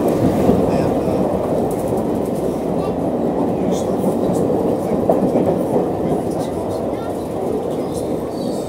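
London Underground train running, heard from inside the carriage: a steady, dense rumble of wheels on rails and car body noise, easing a little near the end.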